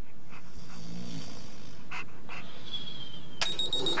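A large dog breathing and sniffing softly over a sleeping man's face. About three and a half seconds in, a drip coffee maker's timer gives a steady high electronic beep.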